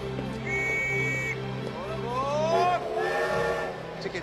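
Sustained film-score music over railway-station sounds. Early on there is a short high whistle, then a louder call that rises in pitch and holds for about a second before stopping.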